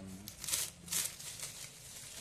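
Plastic bubble-wrap packaging crinkling and rustling in the hands as it is unwrapped, with two louder crackles about half a second and one second in.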